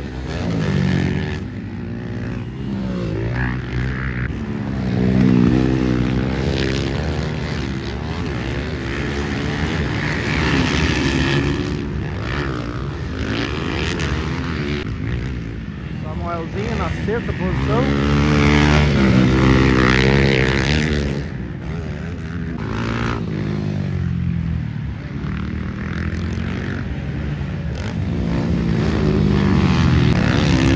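Motocross dirt bike engines revving up and down as the bikes race around the track and take jumps, swelling loudest as bikes pass about five seconds in, again around eighteen to twenty seconds, and near the end.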